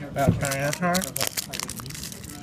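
A voice talks for about the first second, then a run of short sharp clicks and crinkles from a trading card in clear plastic packaging being handled.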